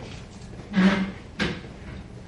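Two knocks in a quiet library room, about half a second apart: the first heavier and louder, the second shorter and sharper, over steady room noise.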